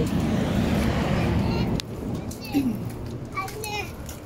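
A rush of steady noise that cuts off suddenly under two seconds in, followed by children's high voices calling out.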